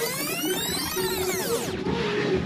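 A fast-forward sound effect: a whirring sweep that rises in pitch and then falls away, cutting off shortly before the end, over electronic background music.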